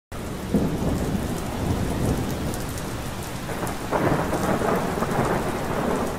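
Rain-and-thunder sound effect: a steady hiss of heavy rain with two rolling thunder rumbles, one just after the start and a second about four seconds in.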